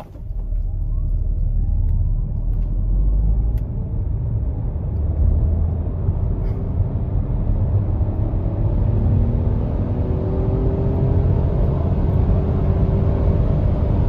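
Renault Austral E-Tech full hybrid accelerating flat out from a standstill to about 130 km/h, heard from inside the cabin. Its 1.2-litre three-cylinder petrol engine runs hard over a steady low rumble of road noise, with a rising whine in the first couple of seconds.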